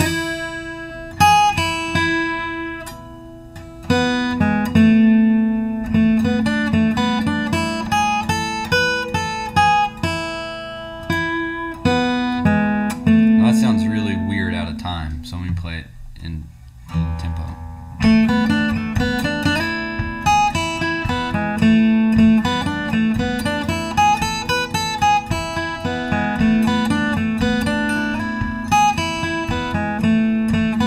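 Steel-string acoustic guitar picking an old-time fiddle tune in E in standard tuning: a quick single-note melody over the G-sharp on the third string, held down and ringing throughout. It pauses briefly twice, a few seconds in and about halfway.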